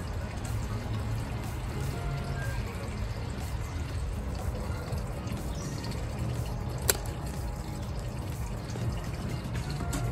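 Hand pruning snips cutting old stems off a potted plant, with one sharp click of the blades closing about seven seconds in, over a steady low background hum.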